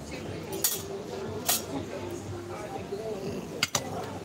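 A metal teaspoon clinking against a small stainless-steel cheese pot and its lid: a few sharp clinks, two of them close together near the end.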